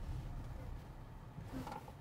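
Quiet low hum of a car cabin, slowly fading, with a faint soft sound near the end.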